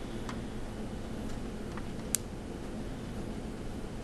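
Steady low room hum with a few soft clicks and one sharper tick about two seconds in.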